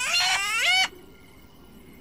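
Cartoon songbird singing one off-key note that rises in pitch, holds, and cuts off just under a second in.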